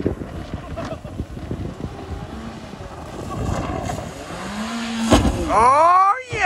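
A driverless Ford Focus's engine running at full throttle, its pedal held down by a wedged board, as the car speeds downhill toward a jump; the engine pitch climbs late on, with wind on the microphone. About five seconds in there is one loud thump as the car hits the jump, followed by rising-and-falling high sounds as it leaves the ground.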